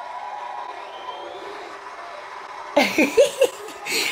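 A quiet stretch of room tone, then, about three seconds in, a woman breaking into a short burst of laughter.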